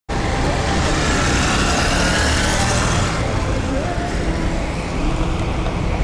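Strong gusting wind buffeting the microphone, with road traffic noise mixed in; the hiss is strongest for the first three seconds and eases after that.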